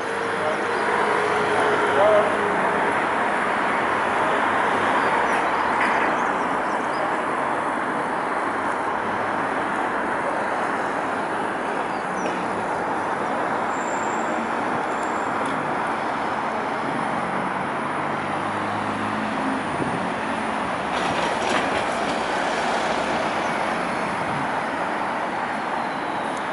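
Steady road traffic noise from a busy multi-lane city street, with cars passing.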